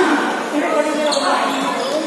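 A volleyball being struck during a rally, with a sharp hit about a second in, under steady shouting from players and spectators.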